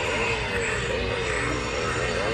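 Handheld Halloween prop chainsaw playing its recorded engine sound: a motor-like drone whose pitch rises and falls about twice a second.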